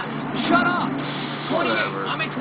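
Short bursts of indistinct speech, voices heard off a television, over a steady low hum.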